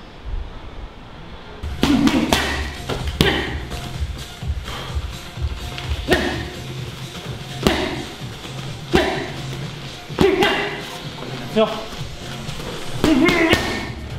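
Gloved punches smacking into a trainer's striking mitt and Thai pad, sharp hits about every second or so starting about two seconds in, over background music with a steady low beat.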